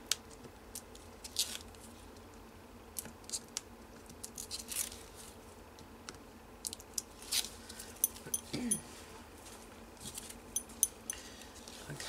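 Hands rubbing and pressing on a clear plastic photo sleeve to burnish double-sided score tape, giving scattered soft crinkles, brief rubbing hisses and small clicks.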